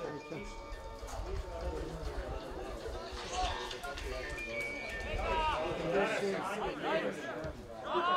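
Open-air shouts of players and onlookers at an amateur football match, with a call of "Bliže!" ("Closer!") near the end, over a low rumble in the first few seconds.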